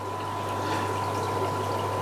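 Air-driven sponge filter bubbling steadily in an aquarium, a constant watery trickle, over a steady low hum.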